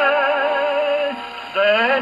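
A man singing a Romanian song with strong vibrato, played from a 78 rpm record on a portable wind-up gramophone, so the sound is thin with little treble. A long held note ends about a second in, and after a short dip a new phrase starts with a rising note near the end.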